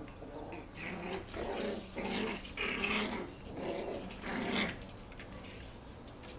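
Havanese puppies play-growling as they wrestle: a run of short growls that stops about five seconds in.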